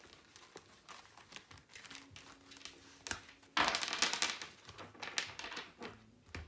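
Tarot cards being handled and shuffled: light card clicks and rustles, with a louder shuffle burst of under a second about three and a half seconds in.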